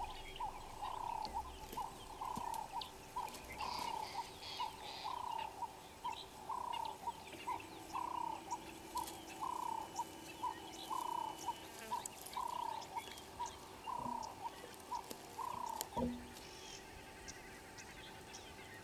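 An animal calling: a fairly faint, regular series of short repeated calls, about two a second, that stops about sixteen seconds in, with a single thump just as it ends.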